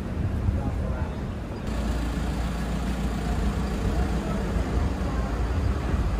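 Road traffic on a city street: a steady low rumble of passing vehicles, growing fuller and louder about two seconds in, with faint voices of passers-by.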